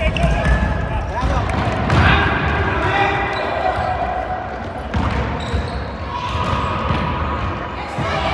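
Futsal match play: the ball thuds as it is kicked and bounces on the court, with a few sharper knocks about two and five seconds in, under players' voices calling out.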